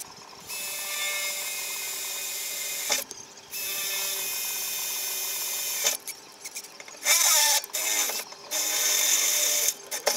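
Cordless drill boring holes into a metal boat-trailer frame, running in three steady spells of about two and a half seconds each with short pauses between.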